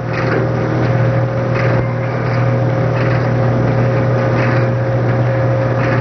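Motor-driven cable winch of a seat-belt Convincer sled running steadily, winding cable onto its drum. A steady low hum that does not change in pitch, with a few faint clicks.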